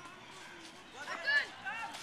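A young boy's high-pitched voice calling out in short bursts about halfway in, over faint distant voices of boys playing in an open park.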